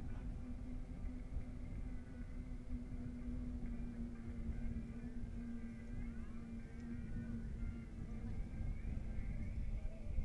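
Wind rumbling on a riding cyclist's camera microphone, with a steady low hum and faint music with thin pitched lines underneath.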